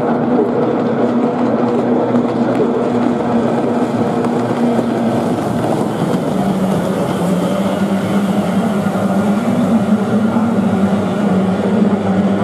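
Kyotei racing boats' two-stroke outboard engines running at full speed, a steady loud drone. Its pitch drops and wavers about five or six seconds in.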